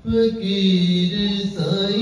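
A man singing Sufi kalam into a handheld microphone. He starts on a long drawn-out note at once, holds it, and shifts pitch about halfway through.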